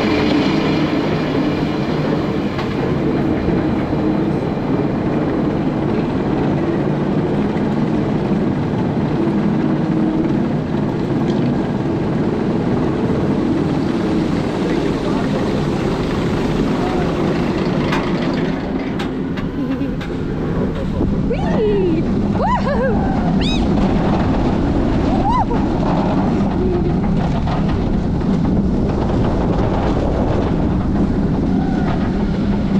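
B&M inverted roller coaster train climbing the lift hill with a steady mechanical rumble, then cresting and dropping about twenty seconds in, with wind rush on the microphone. Riders' cries rise and fall a few times during the drop.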